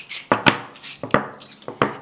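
Metal coins used as sewing pattern weights clinking against each other as they are taken from a stack and set down on a paper pattern: a quick series of sharp metallic clinks with a brief ring.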